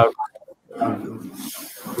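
A man's drawn-out, rough hesitation sound ('uhh') between phrases, heard over a video-call microphone, with a breathy hiss in its second half.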